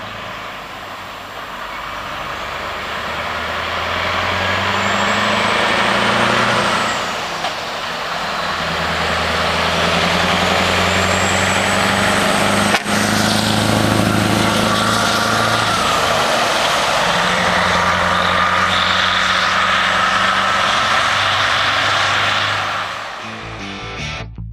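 Scania V8 semi-truck with open exhaust pulling away and accelerating past. The engine note builds, dips briefly at a gear change about 7 seconds in and again near 16 seconds, then pulls loudly and steadily on before fading near the end.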